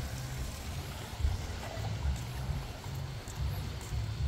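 Wind buffeting the phone's microphone: an uneven low rumble that comes and goes in gusts, over a faint steady outdoor hiss.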